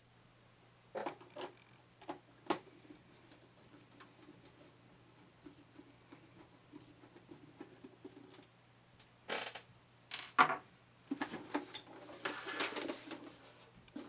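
Screwdriver backing out the screws of a VCR's sheet-metal cover: a few small clicks, then faint fine rattling as the screws turn. Near the end come two sharper knocks, then scraping as the metal cover is worked loose and lifted off.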